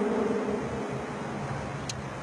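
Steady background hiss and low hum with no clear source, and a single short click near the end.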